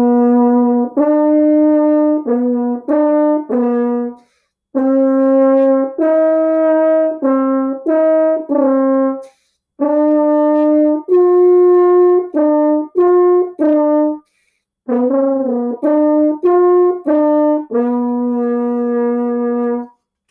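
Solo French horn playing a short melodic exercise in four phrases, each a run of separately tongued notes, with brief breath pauses between phrases. It ends on a long held low note.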